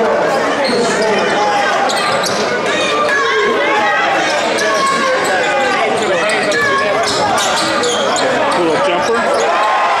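A basketball being dribbled on a hardwood gym floor, with a steady din of many voices from the crowd in the stands.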